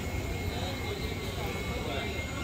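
Steady low rumble of wind on the microphone, with faint distant voices.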